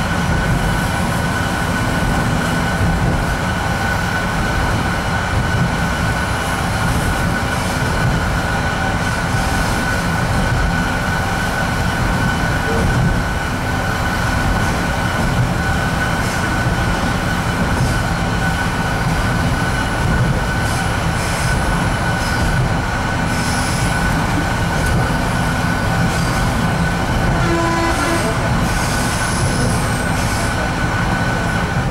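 Interior running noise of an RA2 diesel railbus travelling at speed: a steady low rumble of engine and wheels on the rails, with a steady high whine held throughout.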